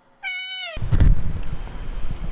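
A British Shorthair cat meows once, a short call that falls in pitch at the end. Then room noise with a few dull thumps and a click follows, the loudest of them about a second in.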